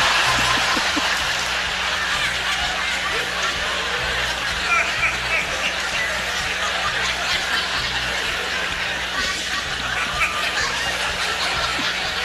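Audience laughing for a long stretch, loudest at the start and then settling into a steady, lower level of many overlapping laughs.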